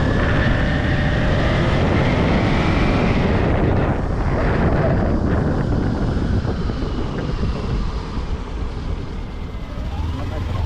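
Motorcycle engine climbing in pitch as it accelerates over the first three seconds, then easing off while the sound slowly gets quieter, with wind rushing over the microphone throughout.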